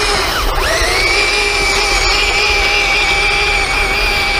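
SG1203 Ripsaw RC tank running at full speed on its electric drive motors and gearboxes: a steady, high motor whine over the clatter of its tracks on gravel, a little bit noisy. The pitch dips briefly about half a second in, then settles back to a steady whine.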